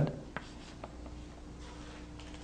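Chalk on a blackboard: a couple of light taps and faint scratching strokes as a short arrow is drawn.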